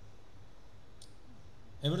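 A pause in a man's lecture, filled with a steady low hiss of room and recording noise, with a single faint, short click about halfway through; the man's voice starts again just before the end.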